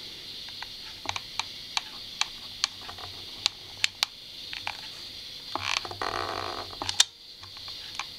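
Bosch GluePen cordless glue pen laying a bead of hot glue on hardboard: irregular sharp clicks through the first half, then a rougher, scratchy stretch of about a second and a half that ends in a loud click.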